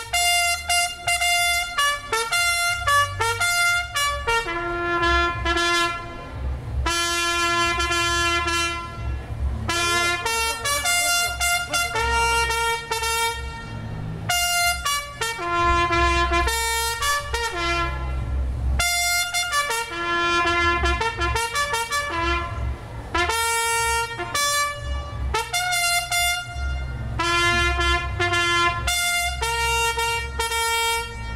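A solo trumpet playing a ceremonial call for the raising of the flag, a melody of short separate notes and longer held ones, with a low rumble underneath.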